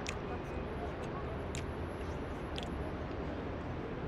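Outdoor urban ambience: a steady low rumble with an indistinct murmur of background voices, and a few short sharp clicks about a second and a half apart.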